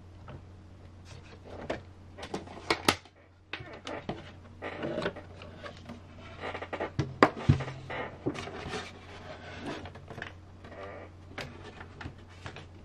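Clicks, knocks and scraping of a plastic RC crawler body shell and chassis parts being handled on a workbench, over a low steady hum. A sharp knock about seven seconds in is the loudest.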